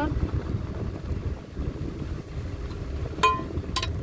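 A vehicle driving on a rough track, heard from inside with the window open: a steady low rumble of engine and road, with wind buffeting the microphone. Near the end come two sharp clicks, the first with a brief ring.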